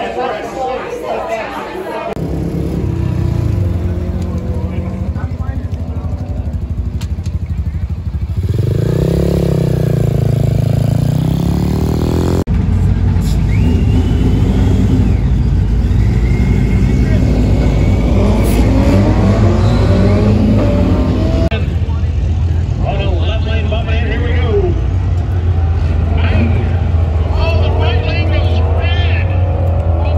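Chatter of voices in a busy room, then several car engines idling and revving in a drag strip staging lane, with people talking over the steady engine rumble.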